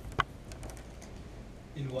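Scattered clicks of typing on a keyboard, with one sharp click a fraction of a second in the loudest and a few fainter ones after it; a voice starts speaking near the end.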